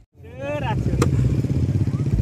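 A motorcycle engine running steadily close by, after a brief voice at the start.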